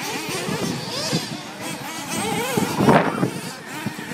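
Several 1/8-scale nitro RC buggies' small glow-fuel engines whining and revving up and down as the cars race round the track, with a louder surge about three seconds in.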